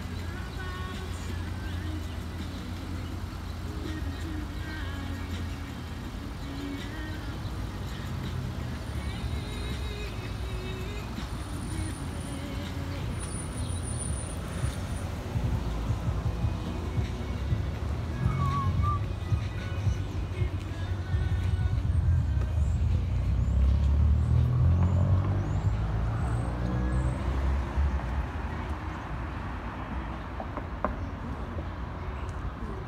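Street traffic: a steady low engine rumble that swells louder about two-thirds of the way through as a vehicle goes by, then eases off.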